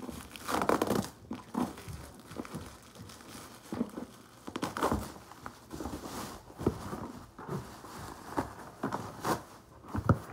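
Bubble wrap and plastic packaging crinkled and torn off a cardboard shoe box, in irregular rustling bursts, the loudest about a second in.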